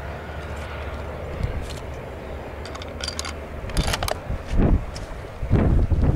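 A low steady rumble, with a few sharp clicks about halfway through and heavier thumps near the end: handling noise.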